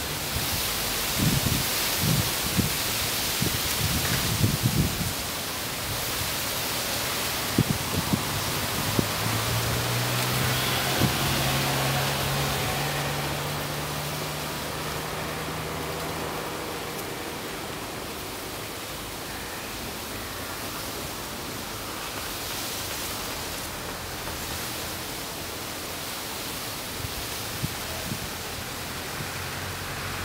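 A steady rushing outdoor noise, with a few low thumps in the first five seconds and a low hum that comes in about nine seconds in, holds for several seconds and fades.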